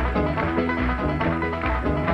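Bluegrass band playing an instrumental passage: five-string banjo picking together with mandolin, acoustic guitar and upright bass, in a steady rhythm.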